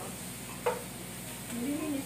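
Shrimp sizzling in a frying pan as a spatula stirs them, with one sharp knock of the spatula against the pan about two-thirds of a second in.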